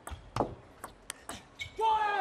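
Table tennis ball clicking off the bats and the table during a fast rally: a quick, irregular series of sharp clicks. A voice starts near the end.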